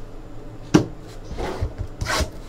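Hands handling trading cards and a cardboard card box on a tabletop: one sharp tap a little under a second in, then soft rustling.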